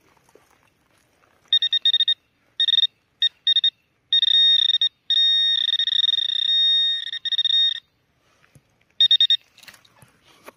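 Handheld metal-detecting pinpointer probe giving its high-pitched electronic tone as it is worked through loose soil: a few short beeps, then a long steady tone of about four seconds, then one last short burst near the end, which signals a metal target close to the probe's tip.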